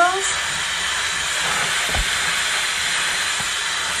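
Handheld hair dryer with a concentrator nozzle running steadily, a continuous blowing hiss as it dries hair. A soft low thump about halfway through.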